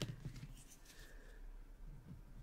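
Faint, light scratching of a drawing tool against a small paper tile, with a soft tap at the very start.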